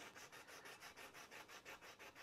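Wadded aluminum foil, wet with water, rubbed back and forth over a rusty, pitted chrome fender: faint, even scrubbing strokes, about four or five a second, as the foil slowly wears away deep rust.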